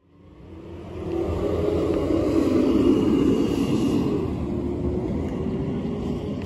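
Low, steady engine rumble that fades in over the first second or so and then holds.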